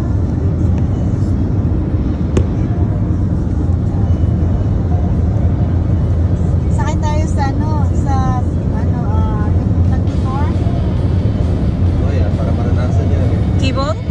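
Steady low road and engine noise of a moving car, heard from inside. Voices come in over it about halfway through and again near the end.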